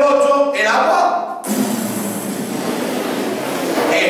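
A man's voice for about a second and a half, then a sudden, steady rushing hiss that lasts about two and a half seconds.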